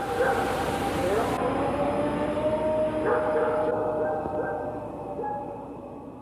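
Played-back field recording of a howl submitted as a possible Bigfoot call: a call that rises about a second in, then holds one long, slightly wavering tone until past the middle, over a hiss of background noise. The hiss drops away in two steps as noise filtering cleans the recording.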